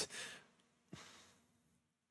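A man's sigh-like exhale that fades out over the first half second, followed about a second in by a short, faint breath.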